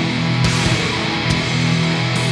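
Drone-doom metal: an SX Furrian Telecaster-copy electric guitar with single-coil pickups, heavily distorted, holding low droning notes, with two sharp hits about half a second and just over a second in.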